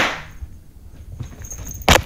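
A handheld twist-type confetti cannon going off with a sharp pop that hisses away within a moment. A second short, sharp burst comes near the end.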